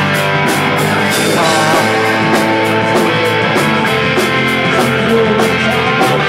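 A punk rock band playing live: electric guitars and bass over drums, with cymbal strokes at about four a second, an instrumental stretch without singing.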